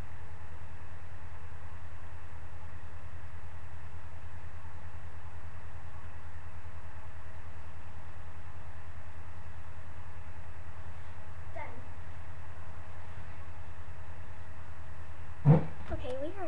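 Steady low hum of background noise at an even level, with a single loud thump near the end.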